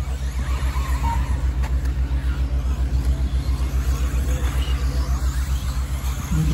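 A steady low drone pulsing about ten times a second, with faint whines of RC buggies racing on the dirt track above it.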